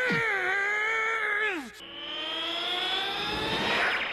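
A man's long strained groan, held for about a second and a half and then dropping away, followed by a rising whine that climbs steadily in pitch until near the end: a cartoon energy-charging sound effect as the spirit bomb is gathered.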